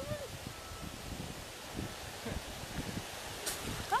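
Quiet outdoor background: an even, low hiss with a few soft knocks, after a brief voice sound right at the start.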